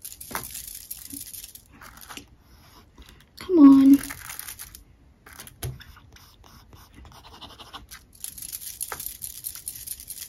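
Steel nib of a Cross Aventura fountain pen scratching across paper in repeated strokes, writing dry because the ink has not yet reached the feed. The scratching comes in a run at the start and again near the end, with a short hum from the writer about three and a half seconds in, the loudest sound.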